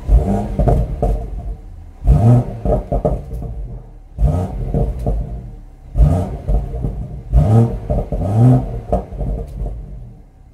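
BMW M140i's turbocharged straight-six revved through its stock exhaust in Sport mode while standing still: six quick throttle blips, each rising sharply and falling back toward idle, about every one to two seconds.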